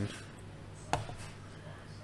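A single short, sharp click about a second in, over quiet room tone.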